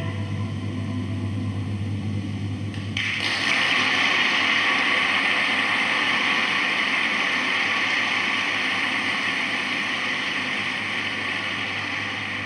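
A short lull after the song ends, then audience applause filling the concert hall breaks out suddenly about three seconds in and carries on steadily, easing off slightly toward the end.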